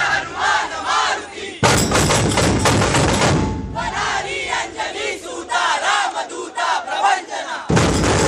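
A crowd of men shouting battle cries together, from a laid-on sound track. About a second and a half in it changes suddenly to a louder, denser stretch, and then the massed shouting returns; near the end it changes abruptly again.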